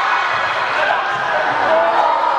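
Several high-pitched voices shouting and calling in a large sports hall, as players and spectators react to play in a handball game.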